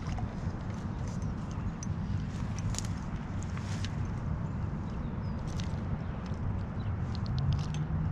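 A steady low rumble with a faint hum that grows near the end, over scattered small clicks and rustles from reeling in and unhooking a small bass by hand.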